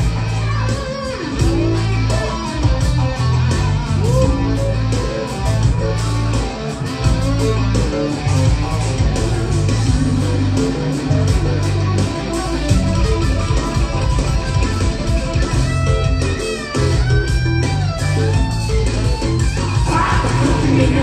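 Loud rock music led by electric guitar over a heavy bass line and a steady drum beat, with little or no singing in this passage.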